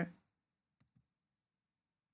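Two faint computer mouse clicks, close together about a second in, over near-silent room tone.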